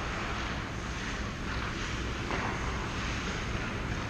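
Steady background noise of an indoor ice rink: a low hum and even hiss, with a few faint scrapes from skaters at the far end of the ice.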